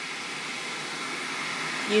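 Hatch Rest white noise machine playing a steady hiss of white noise.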